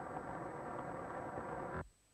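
Crowd noise at a cricket ground: a steady murmur of spectators. It cuts out abruptly near the end.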